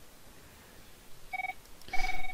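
Two electronic beeps at the same pitch: a short one about a second and a half in, and a longer one starting near the end, over quiet room tone.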